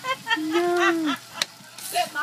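A woman's voice in one long drawn-out exclamation, then a single sharp click about one and a half seconds in.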